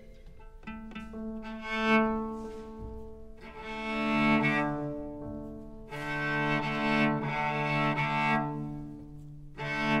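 Amplified cello playing long bowed notes that swell louder and fade back, several in a row.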